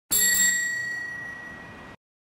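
A bicycle bell ringing, its ring fading away over about two seconds and then cut off suddenly.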